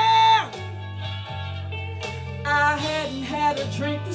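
A woman singing a long held high note with vibrato into a handheld microphone, ending about half a second in, over a recorded backing track with a steady bass line. The backing music then carries on more quietly.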